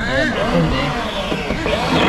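People talking, indistinct, over a steady background noise.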